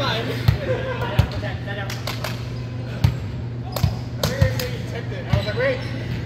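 Volleyballs being hit and bouncing on a gym's wooden floor: about six sharp smacks at uneven intervals, amid people's voices.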